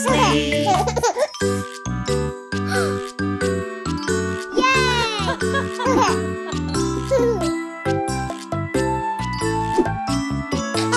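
Gentle children's lullaby music with tinkling chime notes over a soft, steady bass line. A cartoon toddler's voice makes short sliding vocal sounds twice, right at the start and again about five seconds in.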